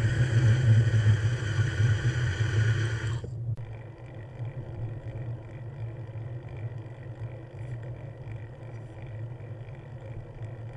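A steady low drone with road and wind rush from a moving vehicle, heard from the ride camera. About three seconds in, the sound changes abruptly to a quieter, steadier drone with less rush.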